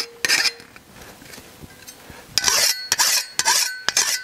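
Hand file rasping along the cut edge of a sheet-steel Porsche 911 center air guide, deburring it: a stroke or two near the start, a pause, then a run of quick strokes in the second half with a faint ringing from the metal.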